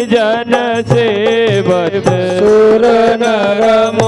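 Live Indian devotional music: a gliding, ornamented melody over a steady keyboard drone, with hand-drum strokes keeping a regular beat.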